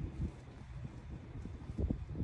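Wind buffeting the microphone as a low rumble, with a short low thump just after the start and a few more low thumps near the end.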